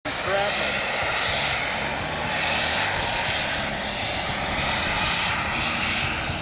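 Radio-controlled model jet's turbine engine running with a continuous jet roar, swelling and easing several times as the throttle is worked to hold the jet in a nose-up hover.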